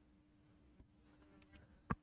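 Near silence with a faint steady low hum, and a single short sharp tap just before the end.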